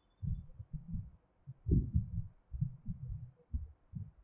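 Low, muffled bumps and rubbing from a clip-on microphone against cloth as the wearer moves, about two irregular bumps a second.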